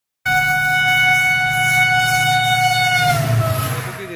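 Train horn sounding one long, steady note over a low rumble. It starts abruptly, and its pitch drops about three seconds in as it fades.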